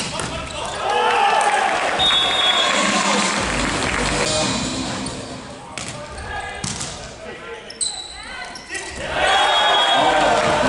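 Indoor volleyball play in an arena hall: a sharp hit of the ball at the start, then a loud stretch of crowd and players shouting as the rally ends. A short whistle sounds, and a few sharp ball strikes near the end mark the serve and passes of the next rally before the shouting rises again.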